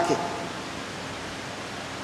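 A man says a brief 'okay' at the very start, then a steady, even hiss of room noise, with a pedestal electric fan running.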